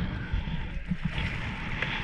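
Strong wind buffeting the microphone in irregular low gusts, over choppy sea water sloshing and splashing around a kayak.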